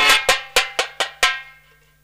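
Struck percussion playing a dramatic stage accent: a quick run of about seven sharp, ringing strikes that get weaker one after another and die away after about a second and a half.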